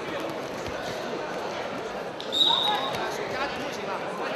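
Indoor arena crowd murmuring and calling out, with a referee's whistle blown once about two seconds in: a single steady shrill tone lasting under a second, the loudest moment.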